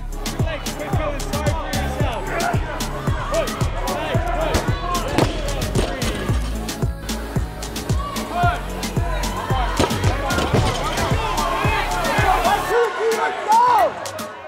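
Background music with a heavy, steady beat and a vocal over it. The deep bass drops out about a second before the end.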